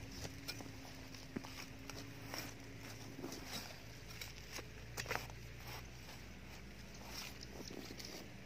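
A narrow-bladed spade chopping and scraping into dry, stony soil to cut out a sapling's root ball, with irregular crunching strikes, the sharpest two close together about five seconds in.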